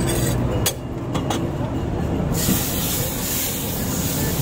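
Hot flat iron griddle hissing steadily, with steam coming off its surface; the hiss starts suddenly about two and a half seconds in. Before it there is busy street-stall background noise with a few sharp clicks.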